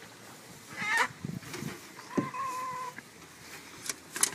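A chicken squawking in distress as it is handled for slaughter. There is a short wavering squawk about a second in, then a longer, steady call lasting most of a second near the middle, with a knock just before it.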